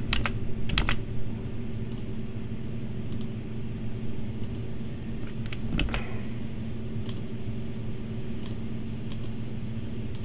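Scattered clicks of a computer keyboard and mouse, a cluster in the first second and single clicks every second or so after, over a steady low hum.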